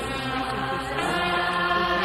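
Background music of sustained choir-like voices holding chords, shifting to a new chord about halfway through.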